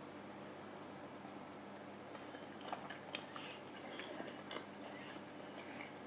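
Faint chewing: a person eating a mouthful of penne pasta in vodka sauce, with small scattered mouth clicks from about two seconds in.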